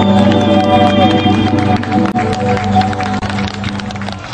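Live band ending a song: held final notes that fade out over a few seconds, with scattered crowd applause and cheering coming in as the music dies away.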